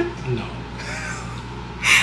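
Breathy laughter, ending in a short, sharp gasp of breath just before the end.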